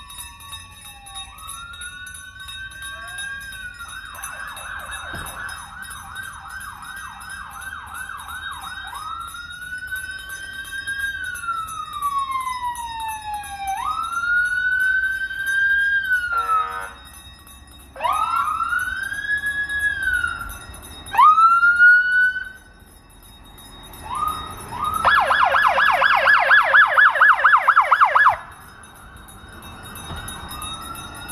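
Police car electronic sirens sounding as the cars drive slowly past. They wail up and down, switch to a rapid yelp, give several short whoops in the middle, and end in a loud yelp near the end.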